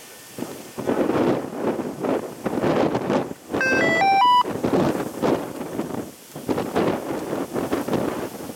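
Gusting wind buffeting the microphone. About three and a half seconds in comes a quick rising series of four electronic beeps.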